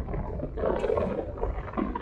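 Low road and engine rumble inside a car cabin, with a brief indistinct muffled sound about half a second in.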